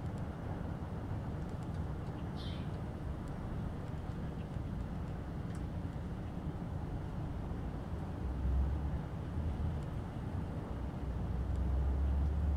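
Quiet outdoor background: a steady low rumble that swells twice near the end, with one faint short high chirp about two and a half seconds in.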